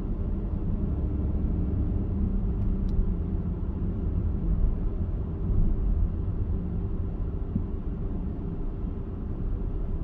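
Steady low rumble of a car driving slowly, engine and tyre noise heard from inside the cabin.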